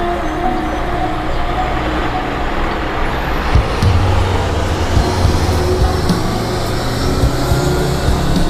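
City bus driving off: engine running and road noise, with a low drone that gets stronger about halfway through.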